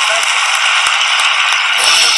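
A large audience applauding, a dense steady clatter of clapping. Music comes in near the end.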